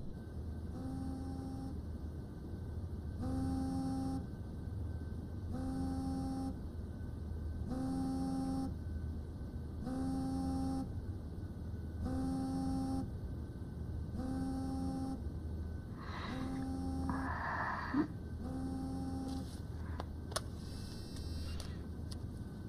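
Mobile phone buzzing in short pulses about every two seconds, nine times in all. Bedding rustles with a couple of light clicks late on.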